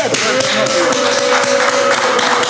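Hand claps, a run of short sharp strokes, over a man's long drawn-out exclamation held on one pitch from about half a second in until near the end.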